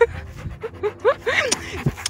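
A dog panting with its mouth open, with a few short, rising whimpers about a second in.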